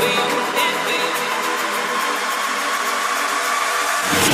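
House music in a breakdown: the bass and drums drop out, leaving sustained synth chords over a steady noise wash, with no vocal.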